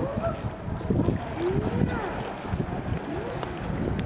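Wind buffeting the microphone in a steady low rumble, with faint voices in the background.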